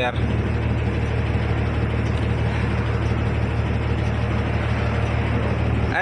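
Tata diesel truck engine idling with a steady low hum, heard from inside the cab.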